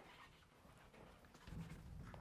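Very quiet chalk on a blackboard: a single tap at the start, then faint short scratching strokes. A low hum comes in about one and a half seconds in.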